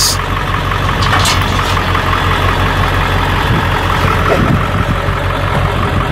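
Pickup truck engine idling steadily.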